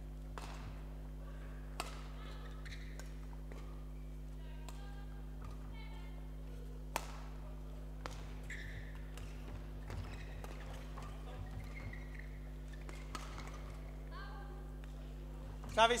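Badminton rally: a scattering of sharp racket strikes on a shuttlecock, the sharpest about seven seconds in, over a steady hum in a large sports hall.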